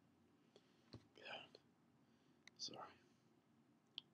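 Near silence, broken by a man's soft breath about a second in and a quietly spoken "sorry" a little later, with a few small mouth clicks.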